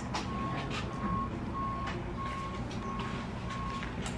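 An electronic beeper sounds a single steady tone in short, evenly spaced beeps, about two a second, over a low background rumble with a few faint clicks.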